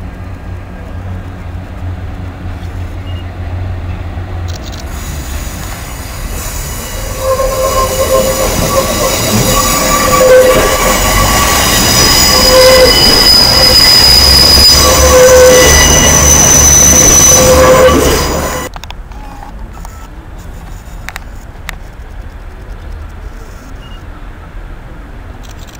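Diesel train running close past the platform, its sound building to a loud rumble with the wheels squealing in several steady high tones. It cuts off abruptly near the end to quieter station background.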